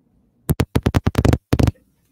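A rapid run of sharp, close clicks and knocks, about ten a second for just over a second, beginning about half a second in.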